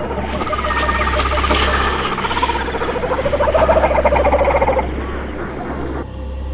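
A wordless, voice-like wail with wavering, gliding pitch over a low steady hum. It rises in pitch and grows loudest around the fourth second, then fades out a second before the end.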